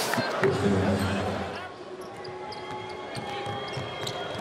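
Basketball arena ambience: crowd noise with a ball bouncing on the hardwood court, dying down over the first two seconds.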